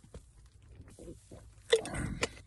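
Someone taking a drink of water: faint small sips and swallows, then a louder sudden mouth sound near the end.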